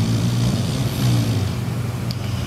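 A loud, steady low hum with a faint wavering tone above it.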